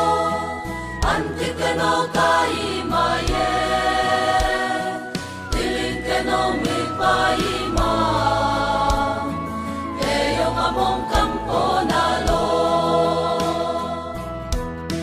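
A mixed church choir sings a gospel song in harmony over instrumental backing, with a beat of sharp percussion hits about once a second.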